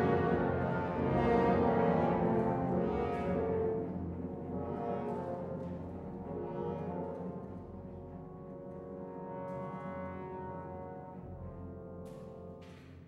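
Opera orchestra playing sustained brass-led chords that change slowly and die away gradually across the passage.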